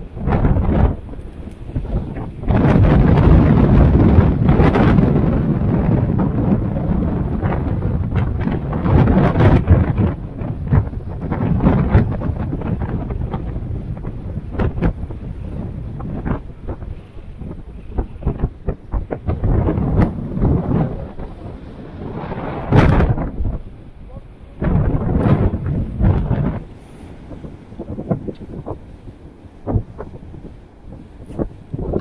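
Strong wind buffeting the microphone over heavy surf breaking on the rocks, a low rumbling roar that swells into a long loud surge a few seconds in and shorter surges later on.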